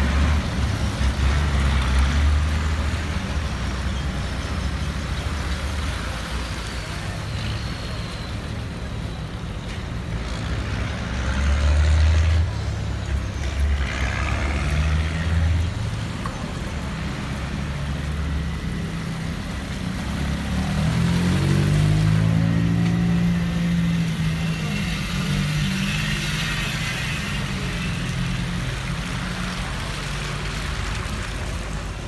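Cars and pickup trucks driving slowly past on a wet street, their engines running low with tyre hiss from the wet road. About two-thirds of the way in, one engine speeds up, rising in pitch.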